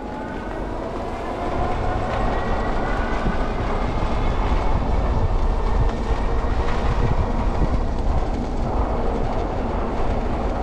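Lectric XP e-bike rolling over brick pavers: a loud rattling rumble from the tyres. Under it, the hub motor's whine rises in pitch over the first couple of seconds as the bike speeds up.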